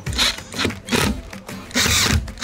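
Background music, with a cordless drill driving a screw into a plastic garden-bed leg in short bursts.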